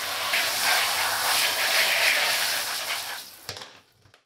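Handheld shower head spraying water onto muddy running shoes in a bath to rinse off the mud: a steady hiss of spray that fades out near the end.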